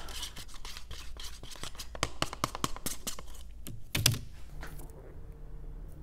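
Wooden craft sticks scraping and clicking against the inside of a paper cup while stirring two-part urethane resin: a quick, irregular run of scrapes and ticks, with a louder knock about four seconds in, after which the scraping stops.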